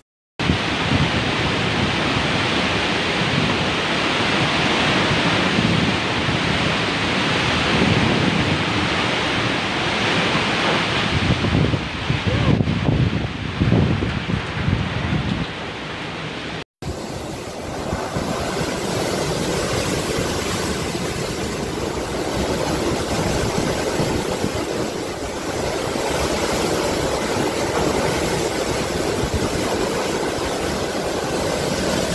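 Typhoon wind and heavy, wind-driven rain: a loud, steady rush of noise that swells and eases with the gusts. About 17 s in, a sudden cut switches to another recording of the same kind of storm.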